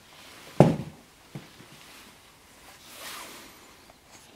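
Motocross boot set down on a floor: one heavy thump about half a second in, a lighter knock a moment later, then a soft rustle near three seconds.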